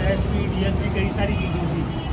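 Busy street traffic: a steady low rumble of passing vehicles, with indistinct voices over it.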